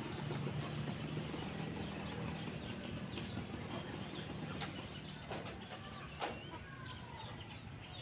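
A rake worked through palay (unhusked rice) drying on a concrete road, with a few sharp strokes in the second half. A low steady hum fades away, and birds chirp.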